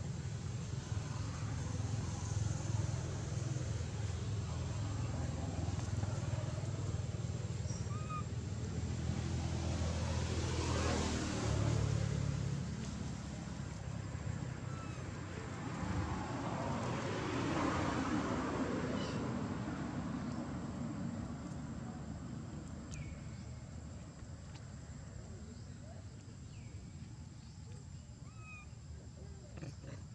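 Passing motor traffic: a low engine hum that stops about twelve seconds in, and two vehicles going by, each swelling and fading. A few short chirps are scattered through it.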